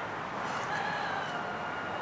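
A faint, drawn-out animal call, held for about a second and a half and stepping slightly down in pitch, over steady outdoor background noise.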